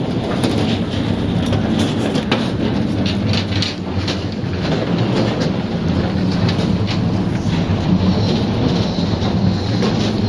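A steady low rumble, with irregular clattering from footsteps and a wheeled suitcase rolling along a metal boarding gangway.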